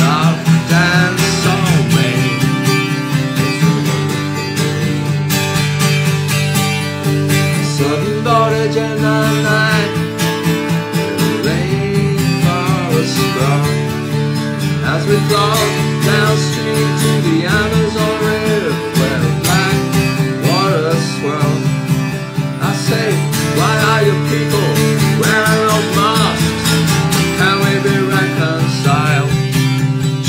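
Solo acoustic guitar strummed steadily through an instrumental stretch of a song, with no sung words; a bending melody line sounds above the chords.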